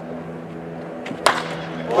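A baseball bat cracking into a pitched ball once, a little over a second in, the sharp sound of a hard-hit fly ball, over a low steady hum.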